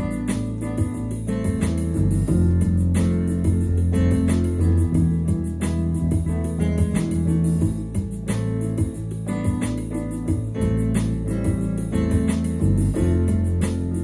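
Instrumental introduction of a song played on a Yamaha electronic keyboard: chords over a steady bass line and a regular drum beat.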